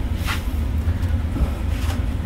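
A fabric lashing strap being handled and pulled around a mold, making two brief rustles, one about a third of a second in and one near the end, over a steady low background hum.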